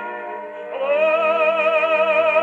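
A vocal record, sung in an operatic style, played acoustically through a home-made gramophone with a Columbia No 9 soundbox and an 8-foot papier appliqué horn. One held note with vibrato fades out, and a new note with vibrato swells in just before a second in and is held.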